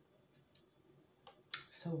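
Wet mouth clicks and lip smacks from close-miked eating. A few sharp, high clicks come about half a second and just over a second in, then a louder cluster just before a spoken word at the end.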